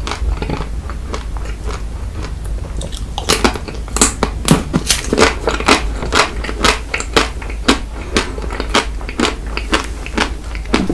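Close-miked chewing of an ice cream bar. It starts with soft, quiet mouth sounds, then from about three seconds in comes a run of sharp crunches and crackles, roughly two a second, as the crisp coating breaks.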